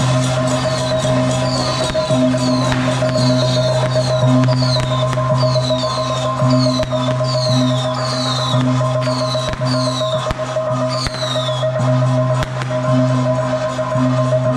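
Music played over horn loudspeakers: a steady held drone with a pulsing low beat, and a high falling chirp repeating about every half second that stops near the end.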